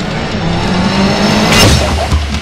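Motorcycle engine speeding closer, growing steadily louder and peaking about one and a half seconds in as it rushes past.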